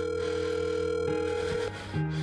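Telephone ringing tone as heard by the caller: one steady tone of about two seconds that stops shortly before the end, over ambient background music.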